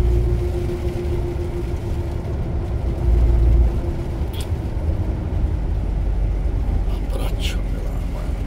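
Inside a moving truck's cab: steady low engine and road rumble with tyres running on a wet road, a faint steady hum in the first half and a short click about four and a half seconds in.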